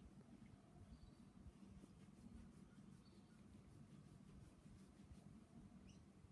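Near silence: faint soft ticks, a few a second, of a cat licking another cat's fur while grooming it, over a low steady hum.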